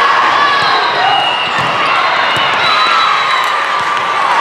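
Busy volleyball hall din: many players and spectators calling out and talking over each other, with volleyballs thudding on the court floors.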